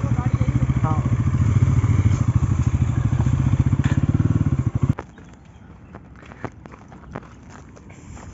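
A motorcycle engine running close by with a steady, even pulse, then cutting off abruptly about five seconds in as the bike is parked and switched off. Light footsteps and small clicks follow.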